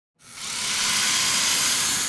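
Sound-effect whoosh of hiss swelling up from silence a fifth of a second in and then holding steady: the opening of an animated logo intro sting.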